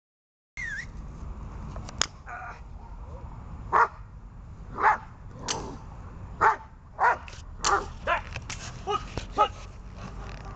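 German shepherd on a leash barking at a decoy during protection (bitework) training. About nine loud barks begin about four seconds in and come closer together toward the end. A single sharp click sounds about two seconds in.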